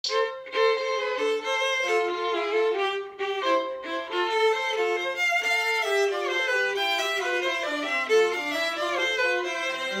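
Violin playing a tarantella melody in quick, changing notes. A faint lower viola accompaniment from a backing track sounds beneath it in the second half.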